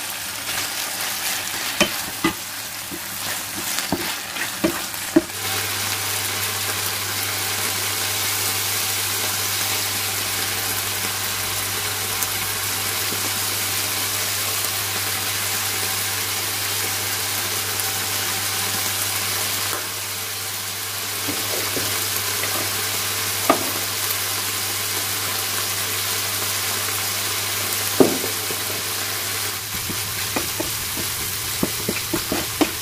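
Chicken breast pieces sizzling steadily in hot oil in a nonstick frying pan, with a few sharp knocks of a wooden spatula against the pan as they are stirred. A low steady hum joins about five seconds in.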